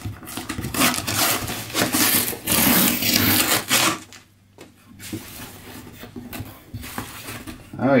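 Packing tape torn off a cardboard shipping box by hand and the flaps pulled open: loud ripping and scraping for the first few seconds, then quieter rustling and cardboard handling.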